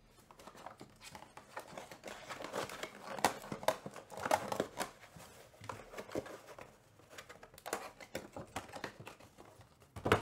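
Hands opening a cardboard trading-card hobby box and handling the wrapped pack inside: irregular crinkling and rustling with small clicks, busiest a few seconds in.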